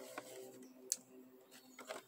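Faint steady mechanical hum of a background machine, with one light sharp click just before halfway.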